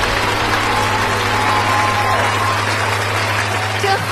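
Live audience applauding as a song ends, with a steady low hum underneath.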